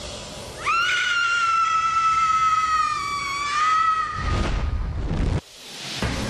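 A long, high-pitched scream held for about three and a half seconds, dipping slightly in pitch. It is followed by a loud burst of noise with a low rumble that cuts off suddenly.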